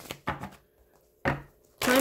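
Tarot cards being shuffled by hand: a few short rustling, tapping handfuls, with a brief near-quiet pause between them.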